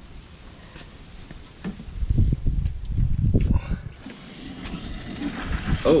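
Low thumps and rustling from hoses being handled. From about four seconds in, a steady rushing hiss as garden-hose water starts pushing backwards through a clogged heater core in a reverse flush.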